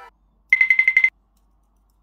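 A short ringing trill like an electronic telephone bell: rapid even pulses for about half a second, starting half a second in and stopping abruptly.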